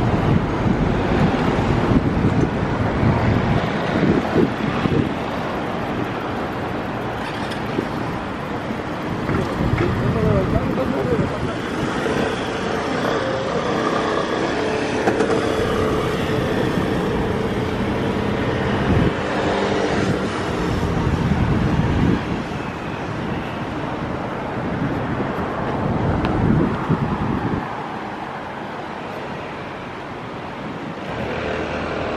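Road traffic on a city street: cars and motorbikes passing, with a motor scooter's engine droning past about halfway through.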